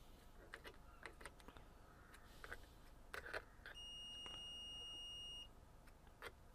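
A digital multimeter's beeper giving one steady high beep of about a second and a half in the second half, among light clicks of test probes touching a TV power-supply board.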